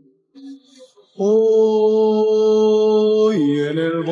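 Isolated male vocal with no instruments behind it. After about a second of near quiet, one long note is held without words, steady in pitch, then steps down to a lower note near the end.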